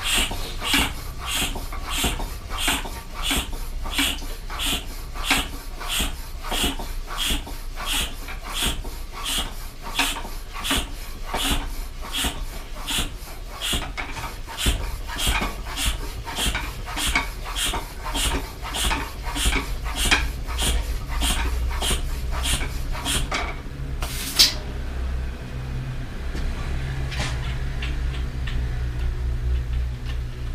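Bicycle hand pump inflating a newly fitted inner tube: even, breathy pump strokes at about two a second. The strokes stop a little over three-quarters of the way through, followed by one sharp snap and then a low steady hum.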